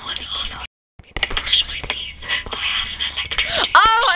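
Whispering with a hissy, close-up texture and small clicks. The sound cuts out completely for a moment just before a second in, and near the end a voice rises sharply in pitch.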